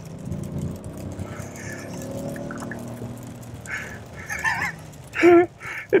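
Maybach 57S's twin-turbo V12 rising in pitch under hard acceleration for the first couple of seconds, then settling into a steadier drone, heard from inside the cabin. A man laughs near the end.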